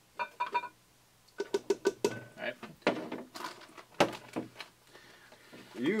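A plastic measuring cup clicking and knocking against a glass mixing bowl and the cornstarch bag as cornstarch is scooped and poured: short, irregular clinks and taps, some with a brief ring, in clusters with quiet gaps between.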